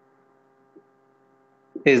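Faint, steady electrical mains hum made of several constant tones, with a man's voice saying one word near the end.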